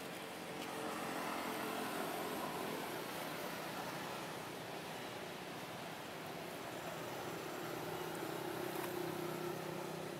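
A motor vehicle engine running nearby, swelling louder twice, about two seconds in and again near the end, as if passing.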